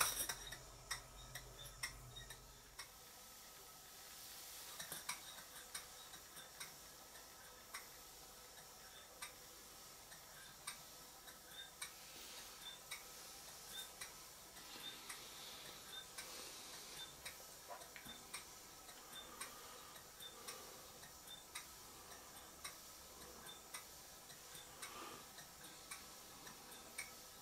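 Stuart S50 model steam engine running slowly on compressed air, heard only faintly: light, irregularly spaced ticks with a faint hiss.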